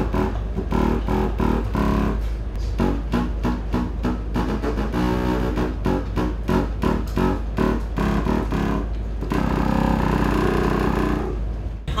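Baroque contrabassoon playing a run of short, detached low notes, then one longer held note near the end, over a steady low hum.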